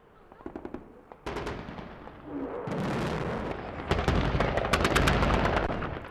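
Rapid machine-gun fire from truck-mounted heavy machine guns, faint clicks at first. A loud rushing roar builds from about a second in, with dense bursts of shots near the middle and later part.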